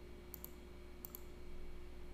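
Computer mouse clicked twice, each click a quick pair of sharp ticks, about a third of a second and about a second in, over a faint steady hum.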